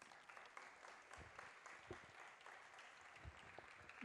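Faint applause, many hands clapping together, with a few soft low thumps.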